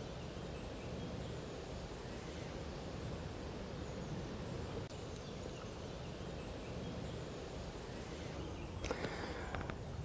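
Faint, steady outdoor background noise with a low rumble of wind, and a few faint clicks near the end.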